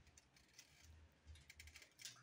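Near silence: quiet room tone with a low hum and a few faint clicks and rustles in the second half.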